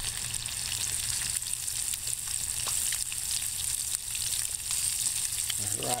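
Catfish frying in hot oil in a pan over a wood-burning hobo stove: a steady sizzle with scattered small pops.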